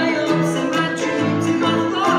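A grand piano playing with a man singing over it, a song performed live.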